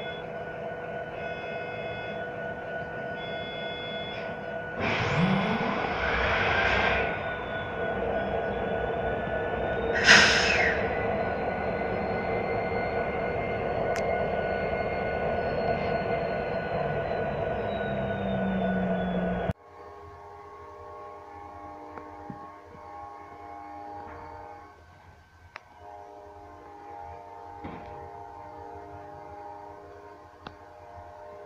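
Ferromex diesel-electric locomotive running steadily as it rolls slowly past, with two brief loud bursts of noise about five and ten seconds in. About two-thirds through, the sound cuts abruptly to quieter locomotive engine sound from farther off.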